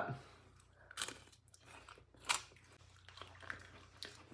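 Crisp freeze-dried apricot slices being bitten and chewed: two sharp crunches a little over a second apart, then fainter chewing crunches.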